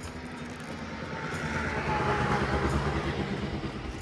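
A vehicle passing by: a rushing noise with a low rumble that swells to its loudest about halfway through and then fades.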